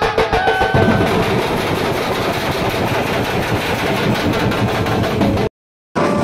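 Loud, rapid drumming from procession drums, a dense run of strokes without pause. It cuts off abruptly to silence about half a second before the end.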